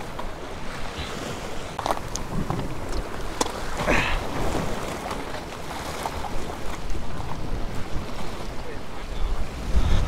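Wind buffeting the microphone over waves washing against jetty rocks, with a few faint knocks and a brief faint call about four seconds in.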